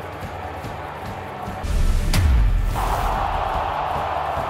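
Background music, then a deep boom with a sharp hit about two seconds in, a transition sound effect between clips. It gives way to a steady wash of stadium crowd noise.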